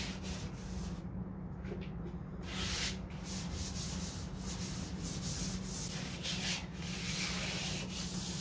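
Hand wet-sanding of a 1969 Corvette's fiberglass hood: sandpaper rasping over the filled panel in quick back-and-forth strokes, pausing for about a second and a half near the start, over a steady low hum. It is the smoothing stage before filler primer, done wet so that missed grooves and bumps can be felt.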